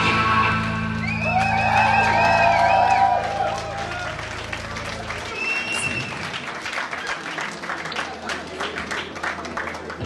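The last chord of a live rock song, electric guitars and bass through the amps, rings on and cuts off about five seconds in, while the club audience cheers and then claps.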